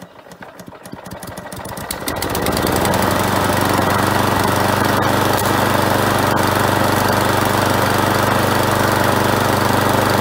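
Gardenline mower's small single-cylinder four-stroke engine, a Briggs & Stratton copy, catching and picking up speed over the first two seconds or so, then running steadily. It is running again after three days under flood water and having its fuel system dried out.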